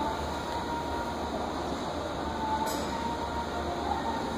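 Steady background hum and noise with a faint held tone that shifts slightly in pitch near the end.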